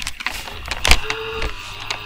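Bumps and rustling of a webcam being moved, with a sharp knock about a second in, then the computer's fan humming steadily.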